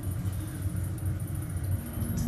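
Fujitec hydraulic elevator car, doors closed, with a low uneven rumble as it starts off.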